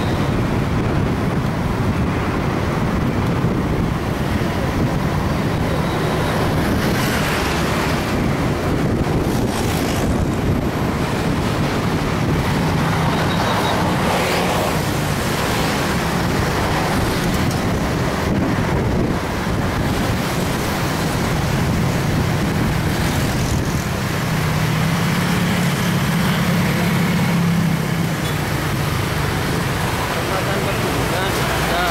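Steady wind rush on the microphone of a moving motorcycle, under a low engine hum that slowly rises and falls in pitch, with surrounding road traffic.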